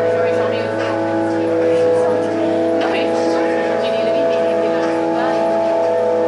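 A steady drone of several held pitches sounding together as one unchanging chord, with faint voice-like sounds drifting over it.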